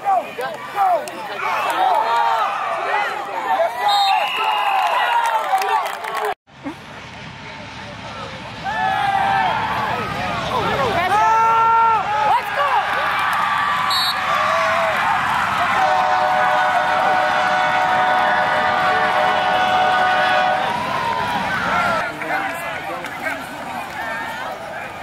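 Football crowd cheering and yelling, many voices overlapping, with a held chord of tones for several seconds in the second half. The sound drops out abruptly twice where clips are spliced.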